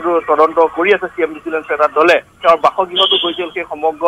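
Speech only: a reporter's voice talking continuously over a narrow-band line that sounds like a telephone.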